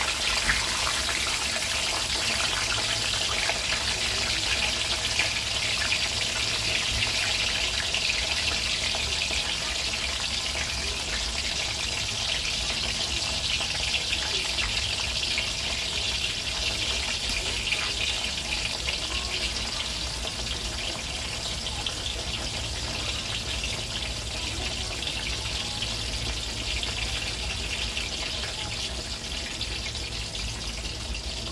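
Cassava sticks deep-frying in hot oil in a wok: a steady, crackling sizzle that eases slightly toward the end.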